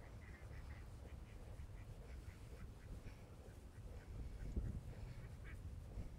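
Ducks quacking faintly in a quick run of short calls, over a low rumble that swells about four and a half seconds in.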